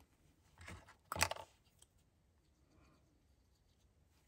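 Small punched paper scraps handled between the fingers: a faint rustle, then a short, louder crinkle of paper about a second in.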